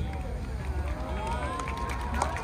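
Crowd of spectators chattering, overlapping voices growing a little louder in the second second, over a steady low rumble.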